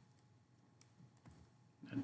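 A few faint, scattered computer keyboard keystrokes as a command is typed, over quiet room tone.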